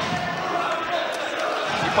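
Arena crowd noise under a man's commentary voice, with dull thuds of punches landing in an exchange, the sharpest near the end.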